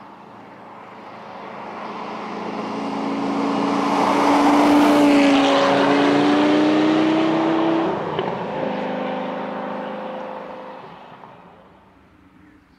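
A car approaching along the road, its engine getting louder and rising in pitch as it comes close, loudest around five to seven seconds in. The engine note breaks about eight seconds in and the car drives off, fading out near the end.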